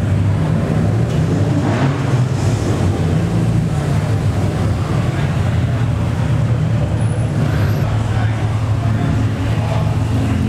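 Car engines and exhausts rumbling steadily as modified cars cruise slowly past in a covered car park.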